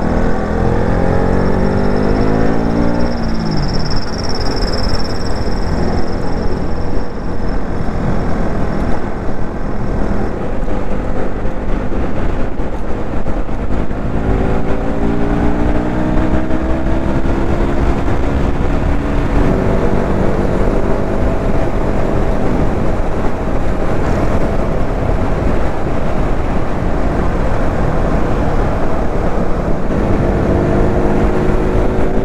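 Motorcycle engine pulling through the gears at road speed, with steady wind rush on the microphone. The revs climb and drop sharply at an upshift about three seconds in, then climb again from about fourteen seconds and drop at another shift near twenty seconds.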